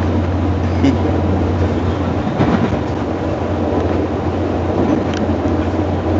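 Running noise inside a moving passenger train carriage: a steady low hum under an even rumble.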